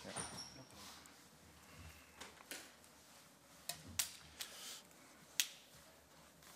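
Faint handling noise on a desk in front of table microphones: a few sharp clicks and knocks, the loudest about four and five and a half seconds in, over light rustling.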